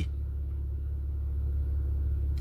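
A steady low rumble, with nothing else above it.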